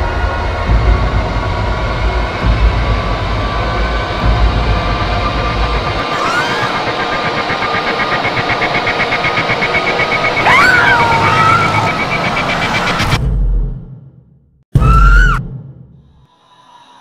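Dense horror-trailer score and sound design: sustained tones over a heavy pulsing low rumble, then swooping rising-and-falling glides and a fast ripple. It cuts off abruptly about thirteen seconds in. After a moment of silence, one loud stinger hit fades out.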